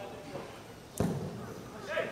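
A single sharp thud about a second in: a football being struck hard, as in a goalkeeper's long kick. Faint shouts from players sound around it.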